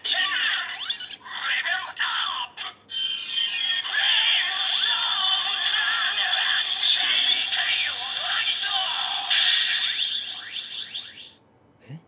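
Bandai DX Gamer Driver toy belt playing its electronic level-up sequence through its small built-in speaker: a recorded 'Gatchaan!' voice call, then music and announced voice lines including 'Flame! Storm! Ground!'. It sounds thin and tinny, with no bass, and cuts off suddenly near the end.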